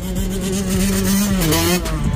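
A motor vehicle engine held at steady revs, its pitch dropping about one and a half seconds in.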